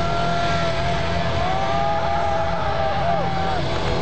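Live hard rock band recorded from the crowd, with a lead electric guitar holding long bent notes. The held note slides up about a second and a half in and bends down near the end, over a dense low rumble of bass and drums.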